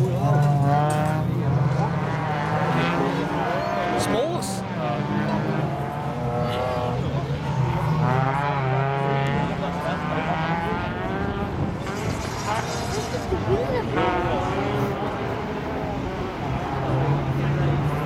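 Rallycross cars racing on the circuit, their engines revving up and down through the gears as they accelerate and brake for the corners.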